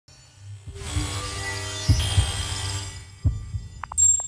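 Synthesized sound design for a logo intro: a steady low hum with a few deep heartbeat-like thumps, under a high shimmering wash that swells in about a second in and fades out near the end.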